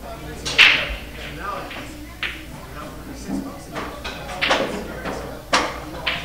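A pool cue strikes the cue ball with a sharp click about half a second in, followed by a few lighter clicks of balls knocking together, over background voices.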